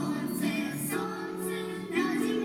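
A small ensemble of young children singing a song together, with a new sung phrase starting near the end.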